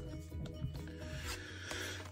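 Pokémon trading cards sliding and rubbing against one another as they are flipped through by hand, quietly, over faint background music.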